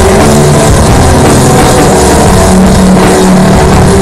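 Loud live drone/stoner rock: a heavily distorted hollow-body electric guitar droning on sustained low notes over an Ashton drum kit's drums and cymbal wash. The recording sits close to full scale throughout.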